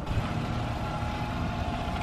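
Small Honda outboard motor pushing a dinghy at slow speed, a steady low rumble.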